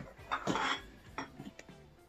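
A few light clinks and knocks of a glass and a beer bottle being handled and set down on a tabletop.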